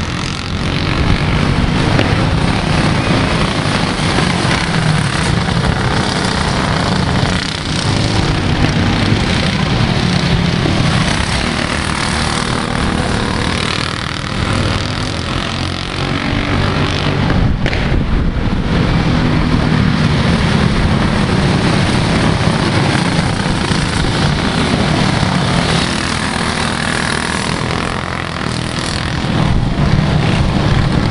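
Small racing kart engines buzzing as several karts run on a dirt oval. The sound swells and eases a few times.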